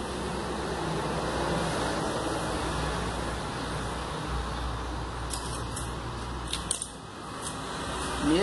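Steady background hiss and hum, with a few light crackles and clicks about five to seven seconds in as a yellow vinyl decal is trimmed with a craft knife and the cut-off strip is peeled away.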